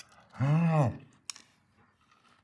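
A man's appreciative 'mmm' hum while eating a cookie: one hum, about half a second long, that rises and then falls in pitch, followed by a short click.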